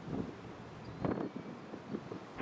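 Wind buffeting the microphone in irregular gusts, the strongest about a second in.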